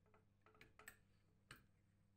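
Ratcheting wrench clicking as it is swung back and forth to turn a nut off a threaded rod: a handful of faint, irregular metal ticks, the loudest about a second and a half in.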